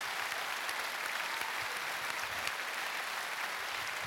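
Large outdoor audience applauding: a steady wash of many hands clapping at even loudness.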